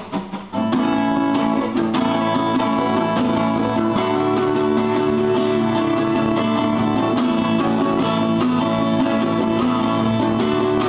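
Acoustic guitar strummed in a steady rhythm as an instrumental passage, resuming after a brief pause at the very start.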